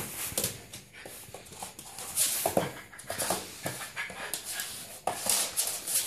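A dog's short whines amid scuffling and a run of scattered thumps as it plays with a football.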